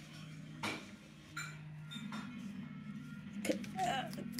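A handful of sharp clicks and taps of a wooden feeding stick against a plastic feeding cup, about five spread over the few seconds, over quiet background music.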